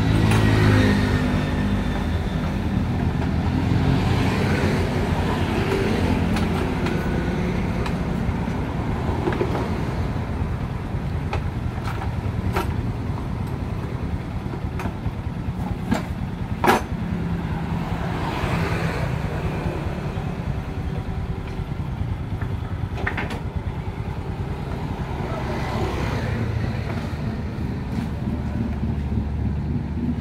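A small engine running steadily at idle, with road traffic swelling past several times. A few sharp knocks a little past the middle, the loudest about 17 seconds in.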